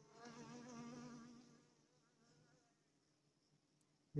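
A honeybee buzzing in flight close by, its pitch wavering, for about a second and a half before it fades away.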